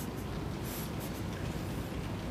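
Steady low hum of a quiet courtroom's microphone pickup, with two faint soft rustles of paper being handled at the lectern.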